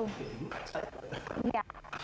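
Indistinct talking voices, with a few sharp taps about one and a half seconds in.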